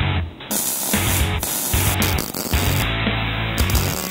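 Background music with a steady bass line, and over it the hiss and crackle of an electric welding arc that starts about half a second in and breaks off and resumes a few times.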